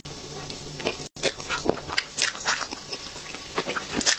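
Close-miked mouth sounds of eating soft chocolate cream cake: quick, irregular wet smacks and clicks of chewing and lips. A brief dropout comes about a second in.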